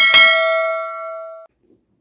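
Notification-bell sound effect: a click and then a bright bell ding that rings and fades, cut off abruptly after about a second and a half.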